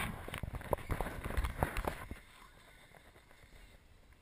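Running footsteps on a dirt road with the camera jostling, about four strides a second, slowing and stopping about two seconds in.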